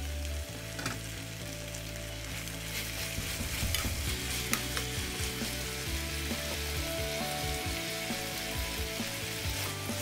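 Pork adobo sizzling in a deep black pan as its soy-vinegar sauce cooks down, with a spatula stirring the meat and scraping the pan in scattered light clicks.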